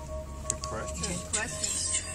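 Car radio playing music with faint talk over it, above the steady low rumble of the car driving, heard from inside the cabin.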